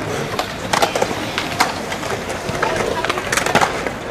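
Skateboards rolling on smooth concrete, with a string of sharp clacks and knocks as boards strike the ground.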